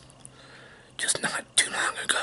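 A man whispering close to the microphone, starting about a second in, after a quiet first second.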